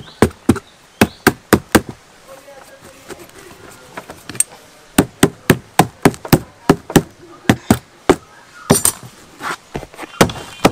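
Runs of sharp strikes from a metal hand tool working on a scrap tyre as it is cut into a planter, about three to four a second, with a quieter gap in the middle.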